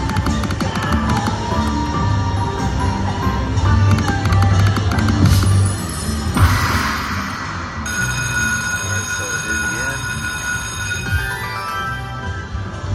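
Triple Coin Treasure slot machine game audio: electronic music with a quick run of clicks as the reels spin and stop. About six seconds in comes a brief rushing burst, then a run of steady chiming tones.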